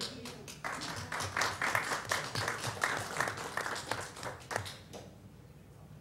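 A short round of applause from a small audience, heard as many separate hand claps. It swells about a second in and dies away about five seconds in.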